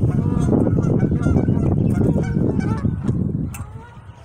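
Geese honking repeatedly by the pond, with a low rumble of wind on the microphone underneath. The sound dies away shortly before the end.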